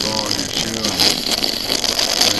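A man's voice in broken, unclear fragments of conversation over a steady hiss.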